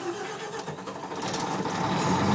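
Pramac GSW560V silenced diesel generator starting up in manual mode: the engine fires and runs up, its sound growing steadily louder.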